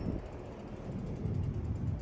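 Bicycle freewheel hub ticking rapidly while coasting, a fast even series of clicks, over a low rumble.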